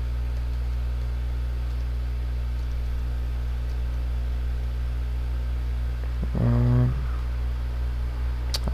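Steady low electrical hum. A man gives one short hummed 'hmm' about six and a half seconds in.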